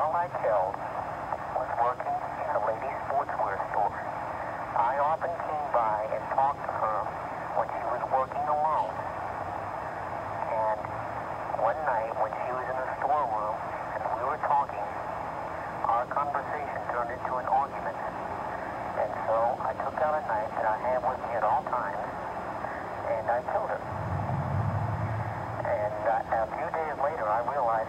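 Tape-recorded telephone call: a man's voice speaking, thin and narrow-sounding as over a phone line, over a steady hiss. A brief low rumble comes near the end.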